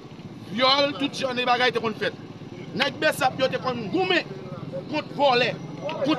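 A man speaking in Haitian Creole in short phrases, over a steady low hum.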